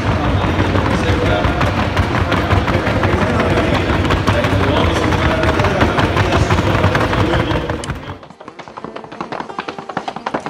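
Fast, even clatter of Paso Fino horses' hooves at the trocha, a quick four-beat diagonal gait, over arena music. About eight seconds in, the arena sound cuts off and a quieter string of thuds follows.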